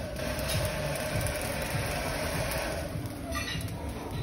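Corded electric hair dryer blowing onto burning charcoal in a brick grill, fanning the coals into flame: a steady motor whine over rushing air, which drops away about three seconds in.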